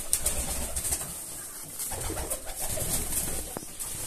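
Indian fantail pigeons cooing, low and repeated, with a single short click near the end.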